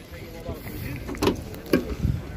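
The bonnet of a Chevrolet car being opened by hand: a couple of sharp clicks and knocks from the latch and bonnet, over a low steady rumble.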